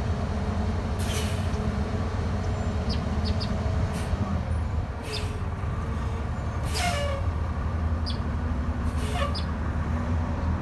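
A vehicle engine idling with a steady low hum, joined by several brief hissing bursts and a few short high chirps.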